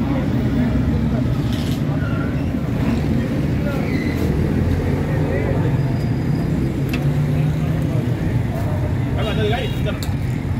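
A steady low mechanical drone runs throughout, with voices murmuring faintly behind it and a brief call near the end.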